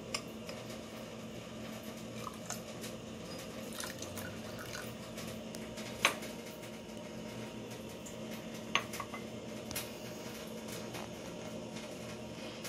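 Tea being poured from a glass into a plastic cup, with a few sharp clicks of cups knocking on a stone countertop, the loudest about six seconds in.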